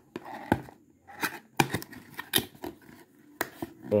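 A small cardboard box being handled and opened by hand: a series of sharp scrapes and clicks as the flap is pulled open, with paper rustling.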